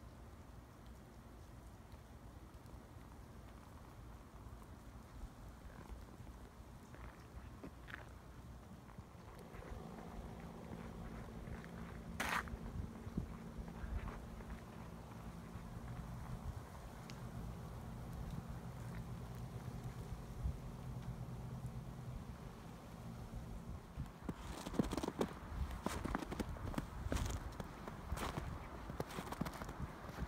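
Footsteps in snow, a run of irregular steps in the last several seconds, over quiet outdoor ambience that carries a faint low hum in the middle and a single sharp click about twelve seconds in.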